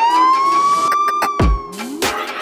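A siren wail that has just risen to its top pitch, holds there, then eases down and fades about three quarters of the way through. A deep thump comes about a second and a half in, and a short new rising tone starts near the end.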